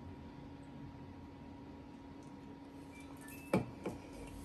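Quiet room with a faint steady hum, then about three and a half seconds in two sharp knocks a moment apart: an aluminium soda can being set down and handled on a wooden table.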